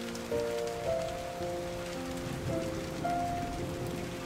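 Steady rain falling on the flooded paddy water, with background music of slow, held notes over it.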